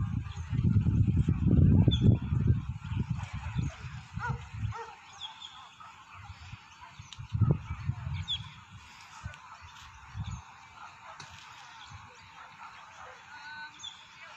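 Low irregular rumble of noise on the microphone for the first four to five seconds, with a shorter burst about seven and a half seconds in. Faint, scattered bird calls run underneath.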